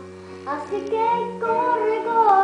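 A young girl singing over a recorded music accompaniment. Her voice comes in about half a second in with held, sliding notes and grows louder.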